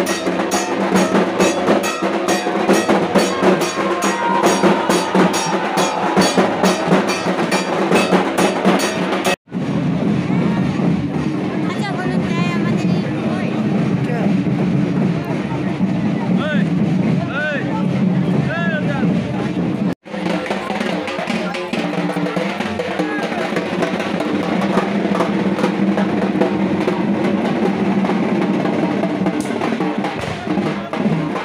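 Dhak drums beaten in a fast, even rhythm over a crowd's voices, with two abrupt breaks about nine and twenty seconds in, after which the drumming is less regular.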